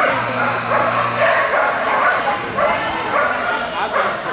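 Dogs barking and yipping over one another, with people's voices mixed in.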